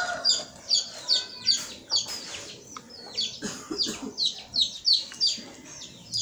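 Chickens calling: a steady run of short, high, falling peeps, two or three a second, with a few lower clucks about halfway through.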